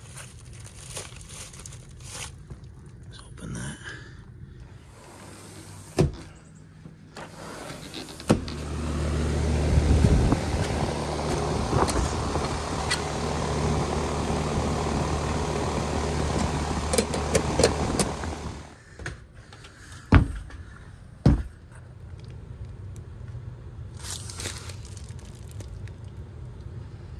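Outdoor air-conditioning condensing unit of a 1.5-ton R-410A system running, a steady hum with fan noise lasting about ten seconds in the middle. Sharp knocks and clicks come before and after it, around quieter handling noise.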